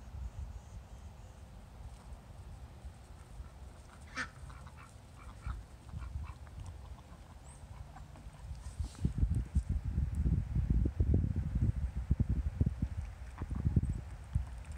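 Ducks quacking a few times, short calls, over a low rumble on the microphone that turns louder and more uneven in the second half.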